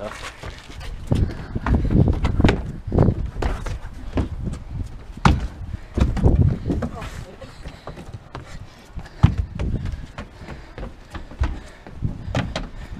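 Footsteps and thumps of a person running and vaulting over plywood walls on a wooden deck: irregular heavy impacts, several close together at times.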